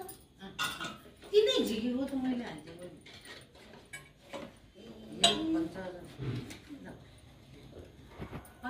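People talking quietly in short bursts, with a few light clicks and clinks between the phrases.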